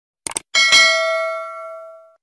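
Two quick mouse-click sound effects, then a notification bell chime sound effect that rings out and fades away over about a second and a half.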